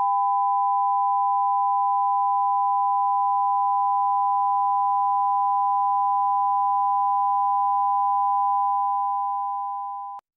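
Steady broadcast line-up test tone, one unchanging pitch, sent with the colour-bar test pattern on a satellite TV feed. It fades out over the last second or so.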